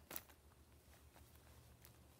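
Near silence, with a short click and rustle just after the start and a few faint ticks later.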